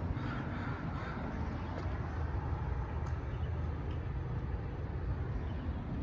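City street background noise, a steady low rumble, with faint calls about half a second in that sound like a crow cawing in the distance.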